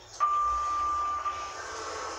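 Lift signal tone: one steady, high electronic beep lasting about a second and a half as the car stops at the floor, over a steady background noise.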